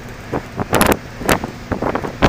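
A car driving, heard from inside the cabin: steady road and engine noise broken by several short, sharp bursts of noise, the loudest just under a second in.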